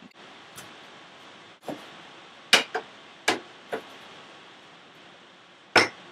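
Several short, sharp knocks and clicks at irregular intervals, the loudest about two and a half, three and a quarter and near six seconds in, over a faint steady hiss.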